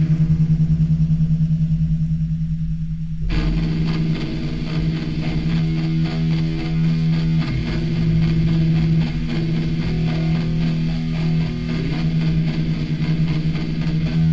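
Opening of an early-1980s Japanese punk rock song: a low, rapidly pulsing note plays alone, then about three seconds in the full band comes in with distorted electric guitar, bass and drums.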